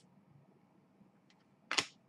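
Trading cards handled at a table: a few faint ticks, then one short swish near the end as a card is slid off the front of the stack.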